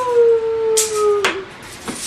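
A single drawn-out, howl-like vocal call, falling slightly in pitch and lasting about a second and a half, with a couple of sharp clicks near the middle.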